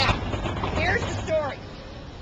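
People's voices talking over a steady low rumble, with the talk stopping about a second and a half in.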